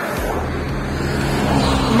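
A motor vehicle passing, heard as a steady rush with a low engine hum that grows slightly louder toward the end.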